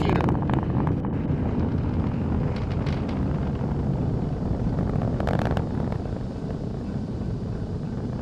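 Falcon 9 rocket's nine Merlin 1D first-stage engines heard from the ground during ascent as a loud, steady, low rumble.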